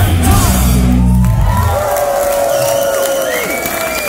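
A punk rock band (electric guitars, bass and drums) holding the final chord at the end of a song, which cuts off a little under two seconds in. It is followed by a loud crowd cheering, shouting and whooping in a club.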